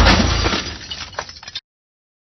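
Glass shattering: a sudden crash with tinkling fragments that fades and cuts off abruptly about a second and a half in.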